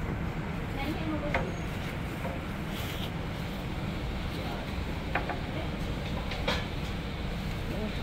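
Steady low rumble and hiss of a gas-fired wok of oil with doughnuts frying in it, with a few light clicks and faint voices in the background.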